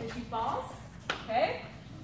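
A person's voice making two short wordless sounds, about half a second and a second and a half in, with a single sharp click in between.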